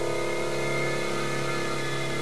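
A steady, unchanging drone: a low hum with several level overtones above it, holding without a break.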